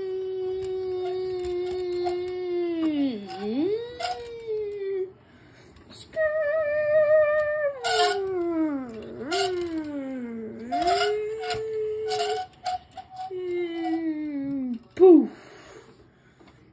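A person's voice making engine noises with the mouth for a toy car: a long held hum that dips in pitch and climbs back several times, like revs dropping through gear changes. Near the end comes a brief, louder call that jumps up and falls in pitch.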